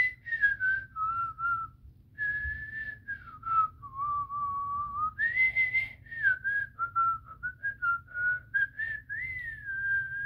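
A boy lip-whistling a Christmas tune: one clear pitch stepping and sliding between held notes, with short breaks between phrases.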